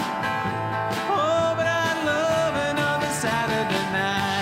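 Instrumental break of a country-rock song played live by a small band: a lead guitar line with bent, wavering notes over strummed acoustic guitar and drums.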